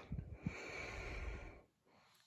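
A person's breath close to the microphone, a soft breathy rush lasting about a second, after a few soft low thumps of handling at the start.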